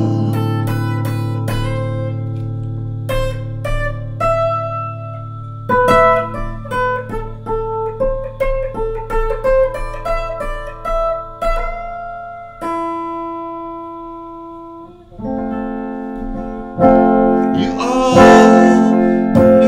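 Gibson Les Paul electric guitar with a capo on the fifth fret playing an instrumental passage. A low chord rings and fades for about six seconds, then a melody of single plucked notes follows, a long note dies away, and chords are struck again near the end, the last one louder.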